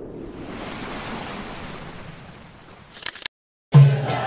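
A channel intro's rushing whoosh effect, a steady hiss of noise that slowly fades, ending in a short high rustle about three seconds in. After a brief silent gap, a marawis group's frame drumming cuts in loudly just before the end.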